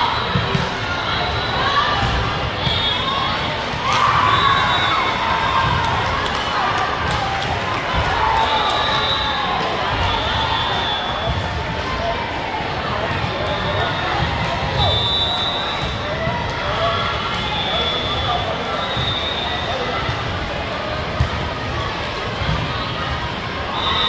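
Indoor volleyball play in a large gym hall: the ball being hit and bouncing, and sneakers squeaking on the hardwood court, over the talk and shouts of players and spectators, with a louder burst of voices about four seconds in.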